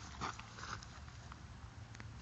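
A person's short breathy laugh, two quick bursts near the start, then faint outdoor background noise.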